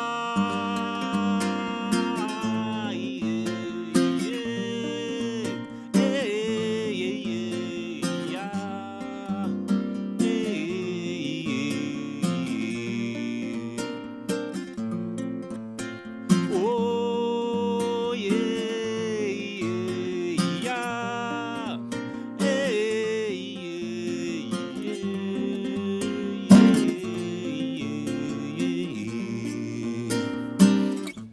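Nylon-string classical guitar played fingerstyle, with a man's voice singing a gliding melody over it.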